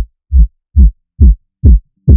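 Phonk track in a break where only the electronic kick drum plays: deep, loud hits, each dropping in pitch, about two and a half a second, with the melody gone.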